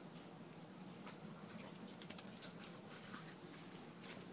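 Faint, scattered light ticks and taps over a low steady room hum.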